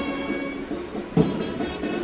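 A pipe band playing: a steady, sustained reedy chord with a drum beat roughly once a second, one clear beat about a second in.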